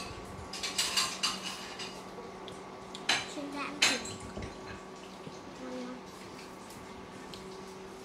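Thin metal spoon clinking and scraping against small stainless steel bowls as scrambled egg is scooped out, with a few sharp, ringing clinks about a second in and two louder ones around three and four seconds in.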